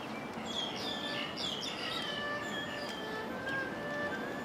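Birds chirping in a quick cluster of short calls during the first half, over background music with long held notes.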